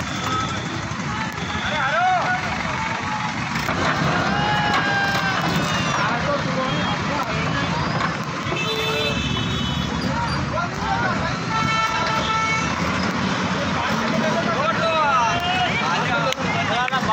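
Crowd voices talking over the steady low running of a JCB backhoe loader's engine. Two held vehicle horn blasts sound in the second half, the second one longer.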